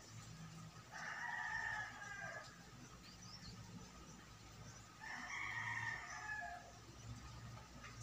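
Rooster crowing twice, each crow about a second and a half long, the second starting about four seconds after the first.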